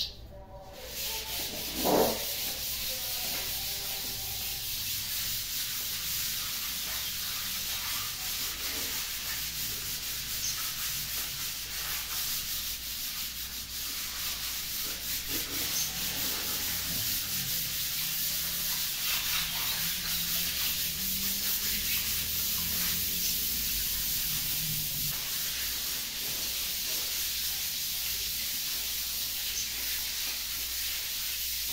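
Sandpaper rubbed by hand over walls: a continuous scratchy hiss of overlapping sanding strokes, with one short knock about two seconds in.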